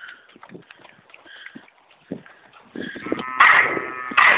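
Cattle mooing: a loud moo near the end, after a quieter stretch with a few soft knocks.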